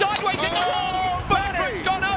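Excited race commentary: a man's voice exclaiming over the action, with one long drawn-out cry about half a second in.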